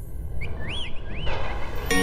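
Intro sound effects over a low rumble: two short whistle-like chirps that rise and fall in pitch. Just before the end, music with sustained notes comes in.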